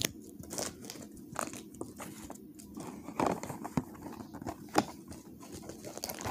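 Crinkling, tapping and crackling of packaging being handled: a cardboard toy box and a foil wrapper, in irregular clicks and rustles, with louder snaps about three seconds in and again near the five-second mark.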